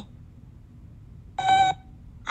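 A single short electronic beep from a cartoon robot, a steady pitched tone lasting about a third of a second, about one and a half seconds in.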